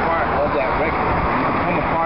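A man talking over steady city street and traffic noise.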